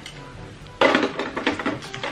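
Metal tongs clattering and scraping against the hot plate of a tabletop raclette grill, a quick run of clicks and scrapes that starts about a second in.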